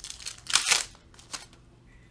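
Foil wrapper of a Donruss Optic basketball card pack being torn open: one short rip about half a second in, with a few light crinkles and clicks around it.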